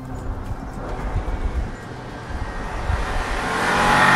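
A 2021 Bentley Flying Spur V8, with its four-litre twin-turbo V8, drives toward the microphone. The engine and tyre noise grows steadily louder over the second half, and a rising engine note comes in near the end.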